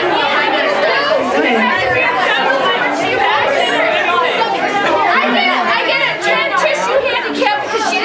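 Many voices talking over one another: a roomful of people chattering at once.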